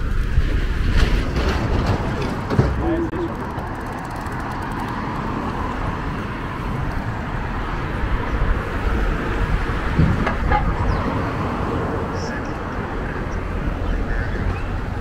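City street ambience: steady traffic on the avenue with passersby talking indistinctly, and a few short knocks, about a second in, near 2.5 seconds and near 10 seconds.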